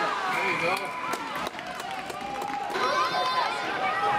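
Spectators in an ice hockey arena shouting and cheering, with many voices overlapping and some held calls. A few sharp clacks from the play on the ice cut through.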